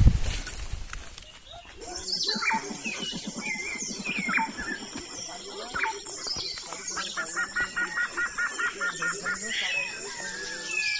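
Birds calling: scattered short chirps and whistles, then a quick run of about ten repeated notes near the end, over a steady high-pitched whine.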